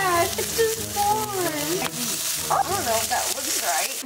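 A beef patty sizzling steadily as it fries in a pan, with indistinct voices over it.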